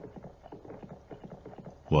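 Horse hooves clip-clopping in a quick, even rhythm, about six or seven beats a second, softly.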